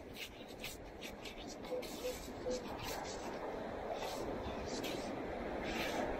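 Minelab Equinox 800 metal detector giving three short beeps of one pitch close together about two seconds in, as its coil is swept over a dug target hole. Scattered clicks and a background rush that grows louder run beneath.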